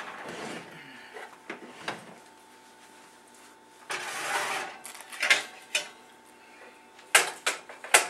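Metal muffin pan and oven rack clinking and scraping as the pan is pulled out of the oven and set down on the stovetop. There are a few light clicks, a longer scrape about four seconds in, then sharper clanks near the end.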